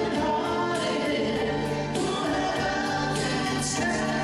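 A song performed through a PA, with a man singing into a microphone and several voices singing together over the band's music at a steady beat.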